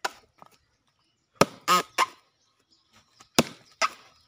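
Axe blows chopping into a soft, fibrous coconut palm trunk: about five sharp strikes at uneven intervals, with a short pitched sound just after the second one.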